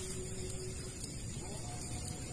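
A small engine running steadily at low revs, a low even hum with a faint higher whine over it that fades out about halfway through.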